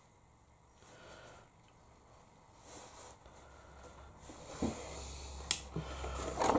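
Quiet handling sounds from a watercolour sheet being worked and moved, with a soft thump about four and a half seconds in and a single sharp click near the end.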